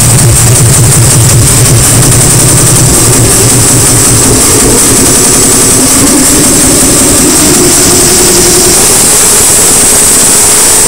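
Hard techno played loud through a club sound system. The pounding low beat fades out about three seconds in, leaving a breakdown of sustained synth tones over a steady high hiss.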